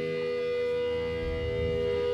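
Amplified electric guitars at a live band show ringing out in a sustained, droning chord, with low notes swelling in a little past the middle.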